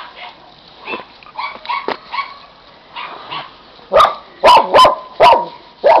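Dogs giving a few faint yips, then a quick run of about five loud, sharp barks starting about four seconds in.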